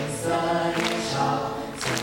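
A group of young voices singing a slow song together in Mandarin, holding each note; a new sung line begins near the end.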